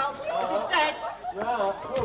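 Several voices talking at once, in indistinct chatter.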